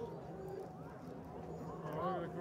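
Faint voices of people talking in the background, over a steady low hum.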